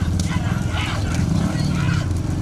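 Many motorcycle engines running together close behind a racing bullock cart, with men shouting over them and the bulls' hooves clattering on the asphalt.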